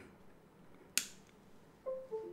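A single sharp click about halfway through, fading quickly. Just before the end, a short run of musical notes begins, stepping downward in pitch.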